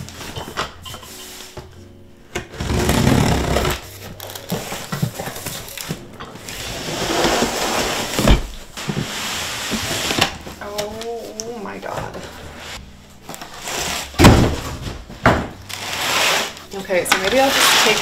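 A cardboard box being opened and unpacked: cardboard flaps scraping, and plastic-wrapped baby-swing parts rustling as they are lifted out. There are stretches of rustling and scraping, with a sharp knock about eight seconds in and a louder one about fourteen seconds in.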